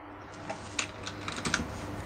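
Typing on a computer keyboard: a few irregular key clicks.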